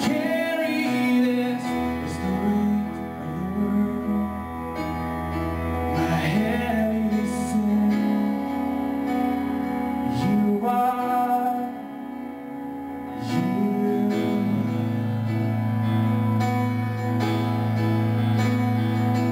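A man singing live, accompanied by his own synthesizer keyboard playing long held chords, with sung phrases coming and going over the sustained chords.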